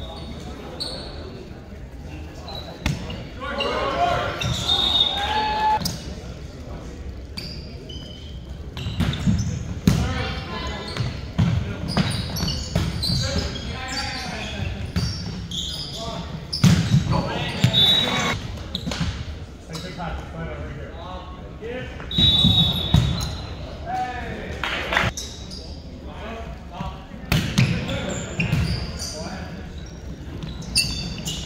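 A volleyball rally in a large gym: the ball served and struck in sharp knocks, sneakers squeaking briefly on the hardwood court, and players shouting calls.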